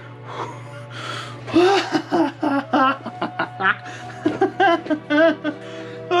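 A man vocalising excitedly without words: short sing-song sounds and laughter, a reaction to a good card pull.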